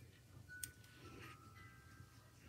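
Near silence: faint room tone, with one faint click a little over half a second in and a few faint thin steady tones.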